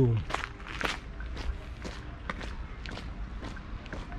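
Footsteps of a person walking on damp asphalt, about two steps a second, over a low steady rumble.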